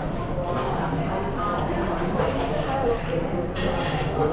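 Indistinct voices of people talking in the background of a restaurant dining room, with no close voice.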